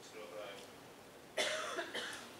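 A man talking quietly into a meeting-table microphone, with one sudden short cough about one and a half seconds in.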